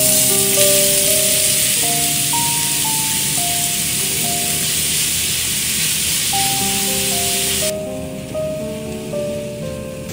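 Grated carrot sizzling in hot oil in a frying pan, a loud steady hiss that cuts off suddenly about three-quarters of the way through. Background music with a simple melody plays throughout.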